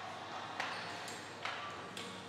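Three sharp, ringing metal clinks of gym weight equipment, unevenly spaced, over faint background noise.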